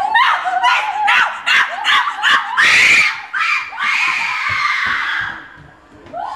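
Person yelping, a fast string of short high-pitched cries, then a loud scream about two and a half seconds in, followed by a long drawn-out cry that fades out before the end.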